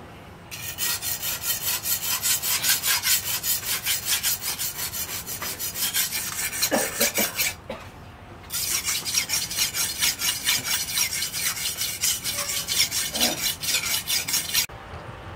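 Machete blade being sharpened by hand on a flat whetstone: rapid back-and-forth scraping strokes of steel on stone, about three a second, with a short pause about halfway through.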